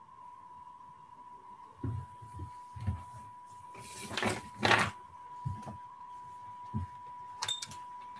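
A faint steady tone, held at one pitch over a video-call audio line, with scattered soft knocks and two brief hissing rustles about four seconds in.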